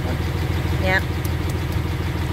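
Dodge Ram 3500's Cummins turbo diesel idling steadily, heard from inside the cab. The owner says it sounds great and runs fabulous after its repair.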